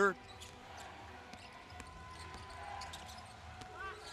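A basketball bouncing on a hardwood court during play, heard as scattered sharp knocks over the steady low hum of the arena.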